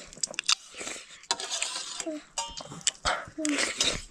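Eating sounds of instant noodles: a spoon clicking and scraping against a steel bowl, with chewing, and a couple of brief voice sounds in between.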